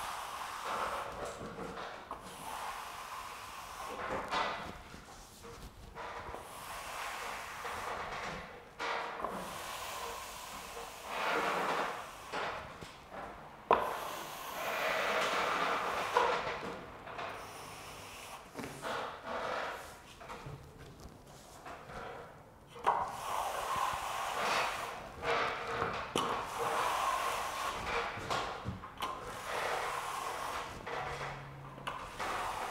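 A plastering trowel scraping and rubbing across a freshly skimmed plaster ceiling in repeated strokes, each a second or two long. This is the final trowelling of the setting skim coat, smoothing it to a finish. Two sharp knocks stand out, about halfway through and again a little later.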